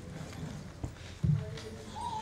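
Two dull footstep thumps about half a second apart, a person stepping down from a stage platform, over quiet hall room tone.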